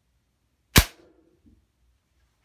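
A single .22 air-rifle shot striking the composite-toe safety shoe mounted in a wooden board. One sharp crack comes a little under a second in, followed by a short ring and a faint knock about half a second later.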